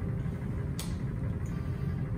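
Steady low room hum, with one light click a little under a second in.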